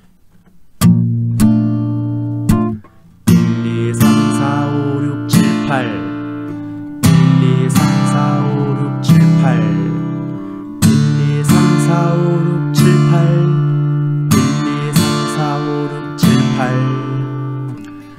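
Steel-string acoustic guitar strummed in a rhythmic pattern through the chord progression BbM7, Cadd9, Dm and Dm7/C, beginning about a second in, with sharp chord strokes and a few short, clipped hits between them.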